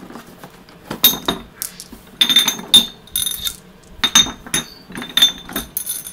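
Clear glass Ramune bottle marbles clinking against one another in a cupped hand: a string of about eight sharp, ringing clinks at an uneven pace.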